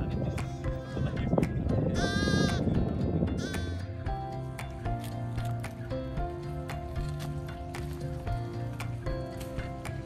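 A lamb bleating over background music: a long, wavering bleat about two seconds in and a short one a second later. From about four seconds on there is only background music with a steady beat.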